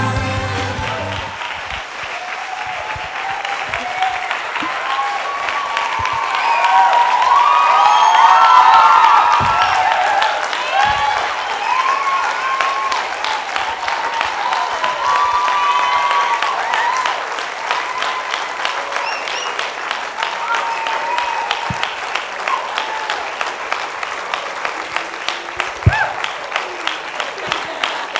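Backing music cuts off about a second in, then an audience claps and cheers with whoops. The applause is loudest a few seconds later and thins to scattered claps near the end.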